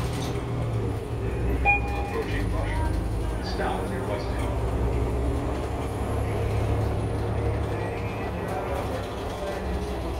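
City bus interior while driving: a steady low engine and road rumble, with a short electronic stop-request chime about two seconds in.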